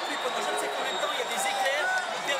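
Several men's voices talking over one another in an argument, over the murmur of a stadium crowd.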